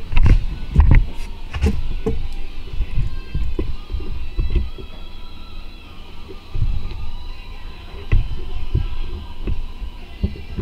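Handling noise: irregular low thumps and knocks as a handheld camera is moved about and repositioned, with a faint steady hum underneath.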